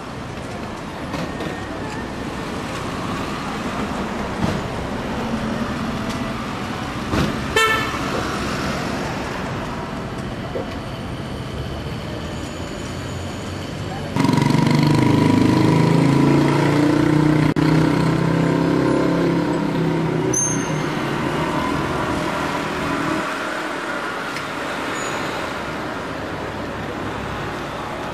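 Road traffic: motor vehicles running, with a short horn toot. About halfway a much louder engine sound comes in suddenly, then slowly fades away.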